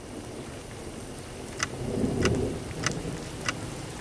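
A steady rain-like hiss with four faint ticks about two-thirds of a second apart.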